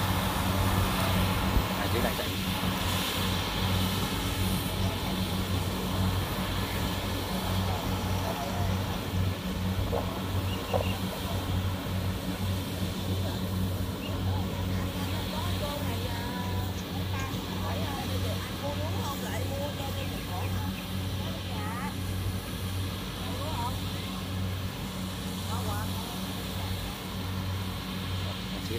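Kubota combine harvesters running steadily while cutting rice: a constant low diesel engine hum with the rattle of the harvesting gear.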